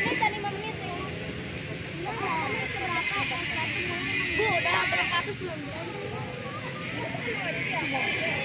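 Faint children's chatter over a steady rushing noise that swells and fades through the middle.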